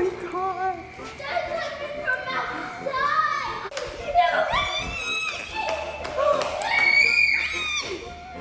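A young child's high-pitched voice, calling and squealing without clear words, with a few longer high held cries near the middle and again near the end.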